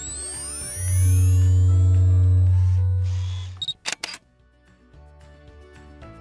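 Logo sting sound design: rising whooshing sweeps over a loud deep bass tone. A quick series of camera-shutter clicks follows at about four seconds in, then soft background music.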